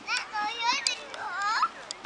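Children's voices: several short, high-pitched calls and shouts in quick succession, sliding up and down in pitch.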